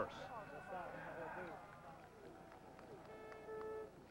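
Voices murmuring at a ski race start area, then near the end two electronic beeps in quick succession, each held for under half a second: a start clock's signal sending a skier off the start ramp.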